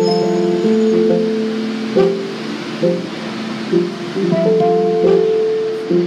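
Instrumental music played on a single instrument: chords and melody notes struck about once a second, each ringing on steadily after its attack.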